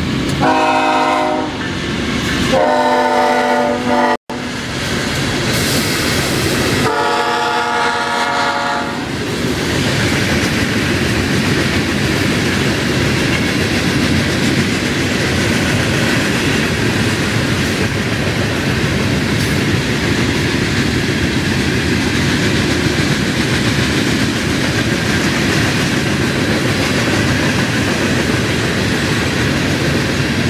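BNSF freight train locomotive horn sounding three long blasts within the first nine seconds, then the steady rumble and wheel clatter of open-top hopper cars rolling past.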